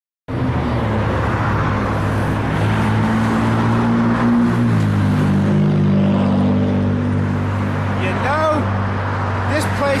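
A motor vehicle's engine running steadily, its low hum dropping a little in pitch about halfway through. A few short voice sounds come near the end.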